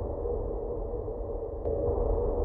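Opening of a progressive psytrance track played from vinyl: a sustained, muffled synth drone with a deep rumble beneath it. There is a single short click near the end.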